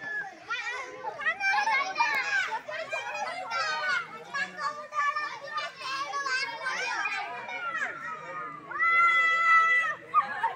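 A group of children and girls talking and calling out over one another in high voices, with one long, steady high-pitched call near the end.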